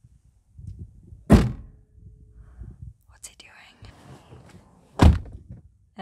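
A car hood slammed shut about a second in, then a car door shut near the end: two heavy thunks, with faint rustling and shuffling between them.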